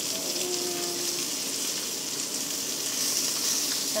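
Whole capelin frying in oil in a cast-iron pan, a steady sizzle.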